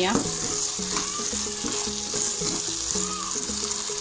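Shredded chicken and vegetable filling sizzling in a hot pan while a spatula stirs and scrapes it around, giving a continuous hiss with irregular scrapes.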